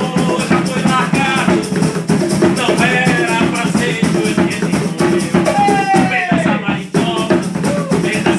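Live acoustic band playing the upbeat marimbó rhythm: strummed acoustic guitar and hand drums under a steady shaker beat, with a melody line that bends and glides over the top.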